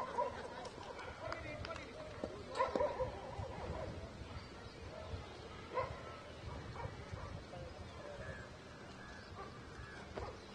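Faint, distant voices on an open field, with three short calls spaced a few seconds apart over a low background hiss.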